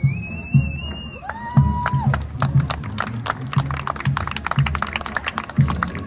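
Marching band drum line playing a street cadence: steady bass-drum beats about twice a second. Two held whistle-like tones sound in the first two seconds, and from about two and a half seconds in a dense run of sharp hits joins the beat, with spectators clapping among them.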